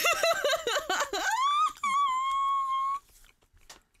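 A woman laughing in quick bursts that rise into a long, high-pitched squeal, held steady for about a second and a half before it cuts off suddenly.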